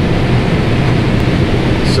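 Combine harvester running while harvesting, heard from inside the cab: a steady low drone of engine and machinery with a hum.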